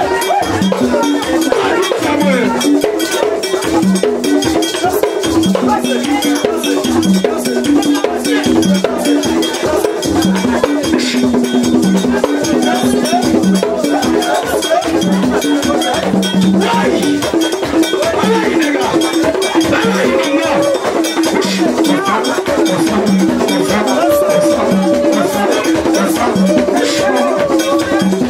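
Haitian Vodou ceremonial music: drums and a struck metal bell beat a fast, steady rhythm, with rattles and a singing voice over it.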